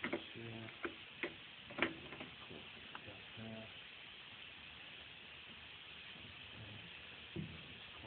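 Clicks and knocks from a Pistorius VNFA-2 underpinner and the frame moulding being handled at it: several sharp clicks in the first three seconds and one more knock near the end, with a few short low hums. A steady hiss runs underneath.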